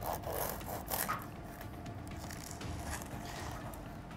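Serrated bread knife sawing through a crusty baguette sandwich: the crust rasps and crackles under the blade. The strokes are louder near the start and about a second in, then softer.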